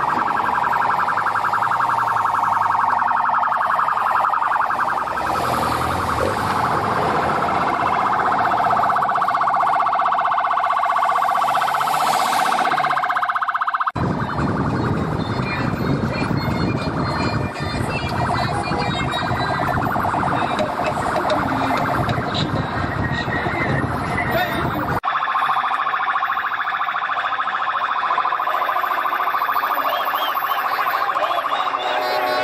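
Motorcade escort sirens sounding continuously with a fast warble, over traffic and crowd noise. The sound cuts abruptly twice, with a stretch of rougher crowd and road noise in the middle.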